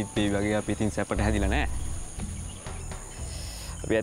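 Steady high-pitched chirring of insects, crickets or similar, running under the scene, with a man's voice speaking briefly in the first second and a half.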